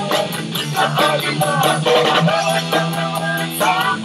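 Music: a man singing over instrumental backing, a steady low note held under the voice.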